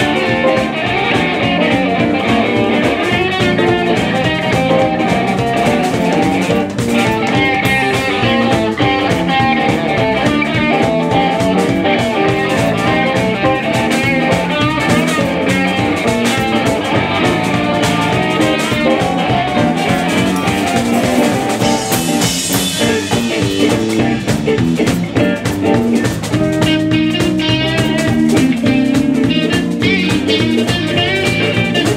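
Live blues band playing an instrumental jam: electric guitars over a drum kit, loud and steady.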